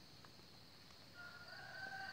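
A faint, drawn-out bird call: one long, steady note that begins a little past halfway.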